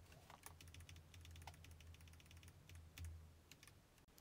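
Faint computer keyboard keystrokes, a scattered run of quick clicks as numbers are entered, over a low steady hum.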